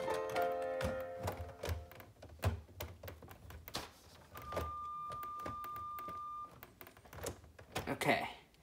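Plastic LEGO parts clicking and knocking as the keyboard and lid of a LEGO grand piano model are pressed back into place. Several overlapping musical notes sound in the first two seconds, and a single steady high tone is held for about two seconds in the middle.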